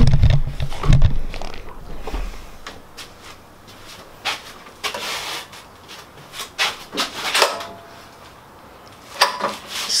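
Handling noises at a wooden workbench: a few heavy bumps in the first second, then scattered short knocks and rustles. No engine is running.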